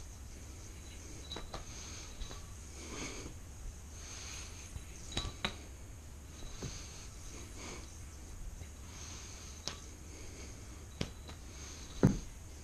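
Yoyo being thrown and caught during string tricks: a scattering of sharp clicks as it lands in the hand, the loudest a thump near the end, with the player's breathing through the nose. A steady faint hum lies underneath.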